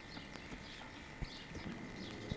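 Small garden birds chirping over outdoor ambience, with a few soft knocks and a faint steady high whine underneath.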